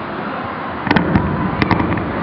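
A handful of sharp knocks or clicks in two quick clusters, about a second in and again a little later, each with a low thud, over the steady background noise of a large echoing hall.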